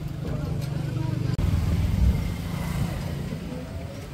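Ride noise inside the open cab of a moving electric cargo three-wheeler: a steady low rumble of tyres, body and wind buffeting the microphone, with no engine note. A faint thin whine comes in around the middle.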